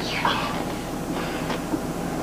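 Steady running noise of a moving train, heard from inside a passenger car.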